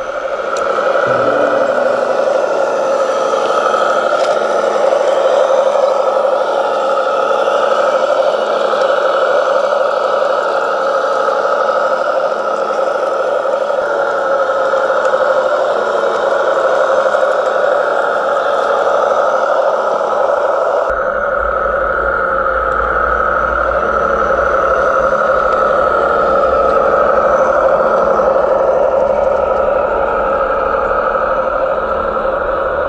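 Radio-controlled model Fendt tractor with a seeding implement driving over soil: a steady whirring hum from its electric drive and gears. About two-thirds of the way through, a low rumble joins in.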